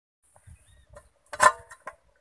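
A flat metal plate set down as a lid on a metal kadai: one sharp clank with a brief metallic ring about one and a half seconds in, followed by a lighter clink as it settles.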